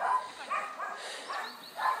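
A dog yapping and whining in a quick string of short, high yelps, about five in two seconds.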